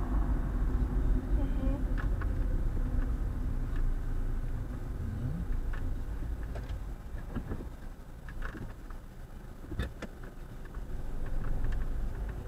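Car engine and road noise heard from inside the moving car's cabin: a low, steady rumble that drops in level in the second half and rises again near the end, with a few scattered clicks and knocks.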